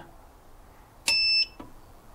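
A single short electronic beep, about half a second long, about a second in, with a faint click as it starts.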